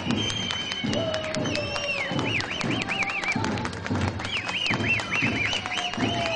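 Festive street music: regular drum beats under a shrill, held melody that breaks into rapid warbling trills, with a crowd clapping along.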